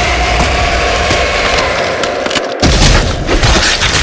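A drawn-out dinosaur roar sound effect, one long held call. About two and a half seconds in, after a brief drop, a sudden heavy boom with deep rumble cuts in.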